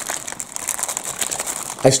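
Clear plastic packaging bag crinkling as hands grip and shift the rubber hot water bottle inside it: a run of irregular light crackles.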